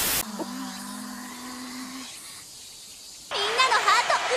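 A short burst of TV-static noise that cuts off abruptly, then a low steady hum with faint hiss lasting under two seconds and a quieter pause. An anime girl's voice starts near the end.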